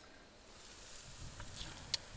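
Battered catfish fillets sizzling faintly in the hot oil of a deep fryer, the hiss building a little after the first half second, with a few sharp pops near the end.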